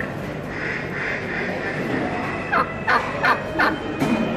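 Turkey gobbling: four quick calls that slide downward in pitch in the second half, about three a second, over the steady murmur of a show hall.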